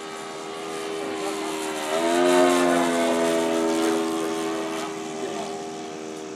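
Radio-controlled P-51 Mustang model's O.S. 95 engine running steadily in flight as the plane makes a pass. The engine note swells to its loudest about two and a half seconds in, then fades as the plane moves away.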